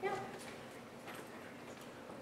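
A woman says "yeah", then quiet room tone with faint, scattered small noises.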